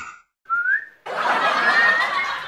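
Whistling: a short upward whistle about half a second in, then from about a second in a longer held, wavering whistled note over a hiss.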